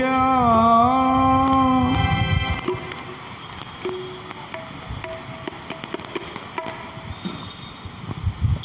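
The end of a devotional song: a man's voice holds a final note over keyboard and tabla, stopping about two seconds in. The rest is a much quieter stretch with a few faint held tones and small knocks.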